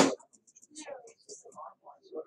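A loud, sharp breathy burst from a person at the very start, then faint whispered muttering.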